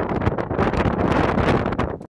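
Wind buffeting the microphone: a loud, rough, irregular rumble and hiss.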